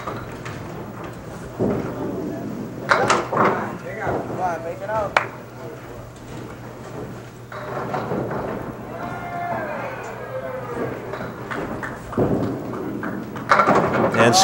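Bowling alley ambience: a murmur of spectators' voices with a few sharp knocks of candlepin balls and pins. The sound grows louder near the end as the ball is delivered and pins start to clatter.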